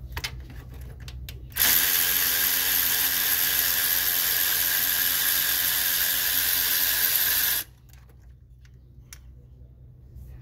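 Cordless electric ratchet running in one steady run of about six seconds, starting suddenly a second and a half in and cutting off abruptly, as it drives a bolt on the engine's valve cover. A few light clicks of handling come before it.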